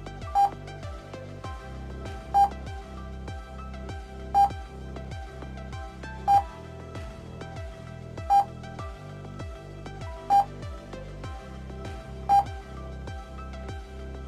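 Electronic background music with a steady beat, cut through by a short, high beep every two seconds, seven in all. The beeps mark each new number flashed on screen for a mental-arithmetic drill.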